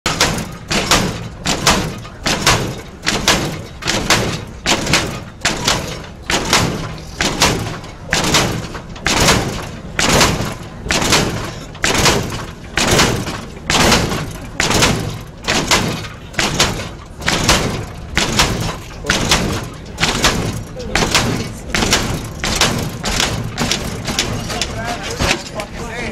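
Lowrider Cadillac hopping on its hydraulic suspension. The car slams down onto the pavement again and again in a steady rhythm, about three hops every two seconds, with voices in the crowd.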